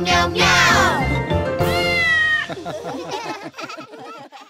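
Children's song music with a cartoon cat meowing, a falling meow about half a second in. The music ends about two and a half seconds in and rings out, fading away.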